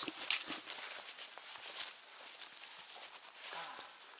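A hiker's footsteps through dry silver grass: irregular soft crunches and rustles of stems brushing past.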